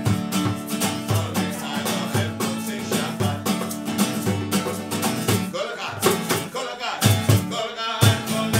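Acoustic guitar strummed in a steady rhythm while a man sings along, with hand clapping keeping time.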